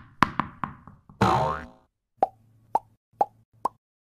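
Logo sting sound effects: a quick run of sharp knocks, a short whoosh with a gliding tone, then four short pitched plops about half a second apart.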